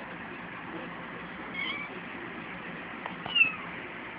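Ten-day-old kittens mewing: two short, high calls that fall in pitch, one a little before halfway and a louder one near the end, over a steady background hiss.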